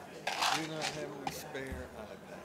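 Speech only: a person talking off-mic in the room, the words not made out.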